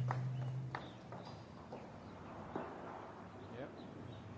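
Faint outdoor background: a low steady hum that stops within the first second, then a soft hiss with a few light clicks.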